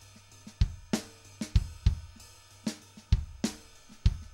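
Sampled drum kit in Steinberg Groove Agent SE playing back a programmed MIDI drum part: kick, snare, hi-hat and cymbal hits, a few to the second.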